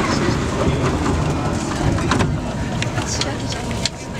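Low rumble and passengers' voices in a packed commuter train carriage, changing abruptly about two seconds in, with a few sharp clicks after that.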